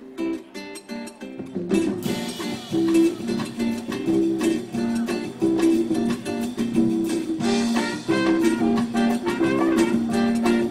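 Live band playing a classic Brazilian tune: acoustic guitar plays alone at first, and the rest of the band comes in with bass and percussion about two seconds in.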